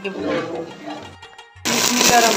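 Background music with a voice, broken by a brief gap; then, near the end, onions frying in hot oil in a pot start to sizzle loudly.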